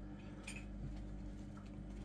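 Faint steady hum of running aquarium equipment, with a few soft ticks and light bubbling.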